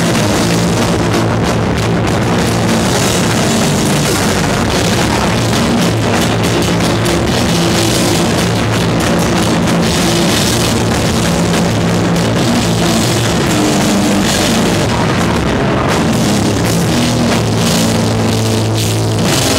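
A live powerviolence band playing loud and without a break: heavily distorted electric guitar and bass over fast drums and crashing cymbals, with the drum kit close and prominent.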